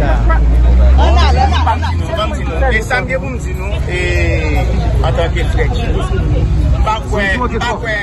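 A man talking with other voices close by. A low rumble sits under the first two seconds or so, then fades.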